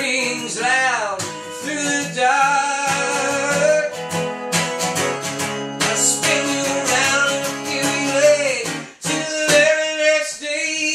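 A man singing over a strummed acoustic guitar, his voice holding long notes that bend and slide. The playing drops away briefly near the end, then comes back in.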